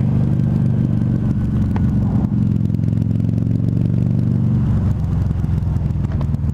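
Harley-Davidson V-Rod Muscle's V-twin running steadily under way through Vance & Hines Competition Series slip-on exhausts, heard from inside the rider's helmet. Its note shifts slightly about five seconds in.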